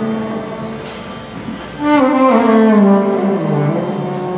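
Carnatic violin playing a slow, ornamented phrase in raga Kapi. A held note fades, then a louder note about two seconds in slides down in pitch before settling.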